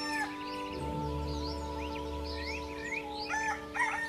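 Programme jingle: a soft sustained music chord with birdsong chirping over it and a rooster crowing, a dawn sound-effect bed.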